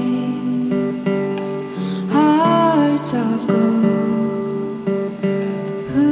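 Live performance of a slow song on acoustic guitar with electric guitar accompaniment. A melody line glides between notes over the sustained guitar chords.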